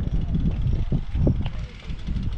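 Wind rumbling on the microphone, with a brief voice sound about a second in.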